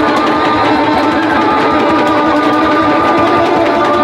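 Live traditional Ethiopian music: a krar lyre and a masinko one-string fiddle playing together over a fast, steady rhythmic pulse, with long held notes.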